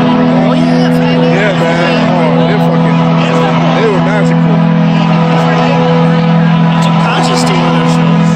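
Sustained low synthesizer drone playing through a concert arena's sound system, with audience members talking close to the microphone.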